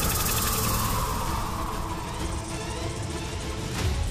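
Dramatised wind-storm sound effect: a loud rush of wind with a whistle that falls in pitch over the first two seconds, over a low rumble and a background music score.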